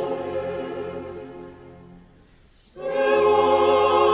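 Opera chorus with orchestra holding a chord that dies away about two seconds in. After a brief hush the chorus comes back in loudly on a new sustained chord with vibrato.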